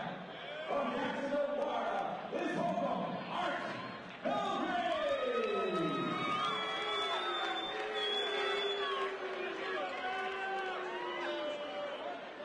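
Cage-fight announcer's voice over the arena PA introducing a fighter. About four seconds in he launches into a drawn-out call of long held syllables, the first sliding down in pitch, with crowd noise underneath.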